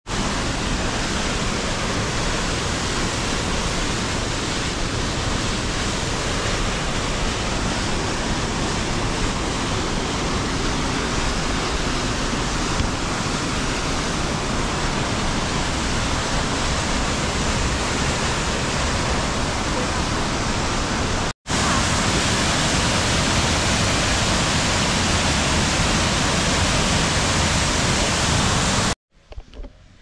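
Waterfall: a loud, steady rush of white water cascading down rock. The rush breaks off for an instant about two-thirds of the way through, then cuts out near the end.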